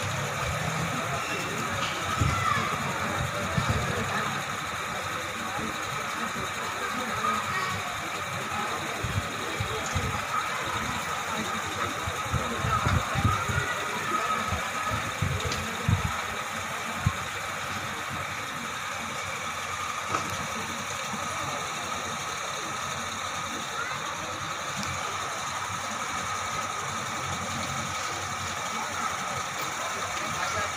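Busy street ambience: indistinct voices of people talking nearby over a steady hum of traffic.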